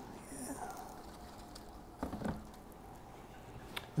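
Faint handling sounds, soft knocks and rustles, as a small plastic plant container is lifted, with a brief murmured word near the start.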